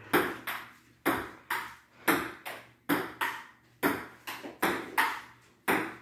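Table-tennis rally: a plastic ping pong ball being hit back and forth by paddles and bouncing on the table, a steady run of sharp clicks about two a second.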